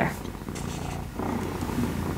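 A pet cat purring steadily, a low continuous rumble.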